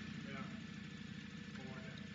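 Faint room tone: a steady low hum, with no clear event.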